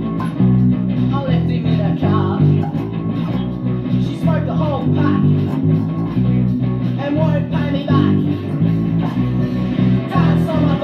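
Electric bass guitar played along to a recorded punk rock song, the bass notes moving in a steady, driving rhythm under the band's guitars.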